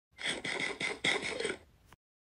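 Eating sound effect of an apple being munched: a quick run of crunchy bites, about four a second, stopping after about a second and a half.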